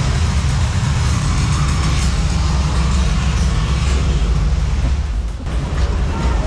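Rushing, churning water around a river rapids raft, with heavy wind rumble on the camera microphone; the noise dips briefly about five seconds in.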